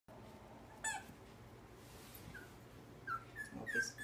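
Puppy whimpering as a littermate plays rough with it: one short high yelp about a second in, then a few brief high whimpers near the end.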